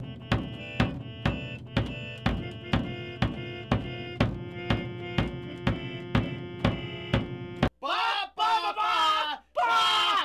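A single drum struck with a stick in a steady beat, about two hits a second, over a keyboard holding one sustained chord. Both stop suddenly about three-quarters of the way in, and two men then yell loudly.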